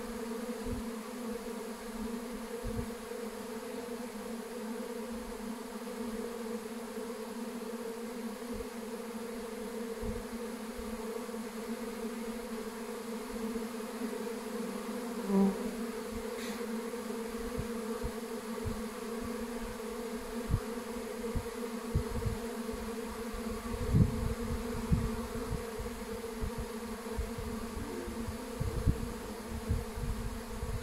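A honey bee swarm buzzing as one dense, steady hum, with occasional low thumps underneath.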